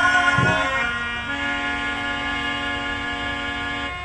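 Harmonium holding a sustained reedy chord between sung lines, with a few low tabla strokes just after it begins.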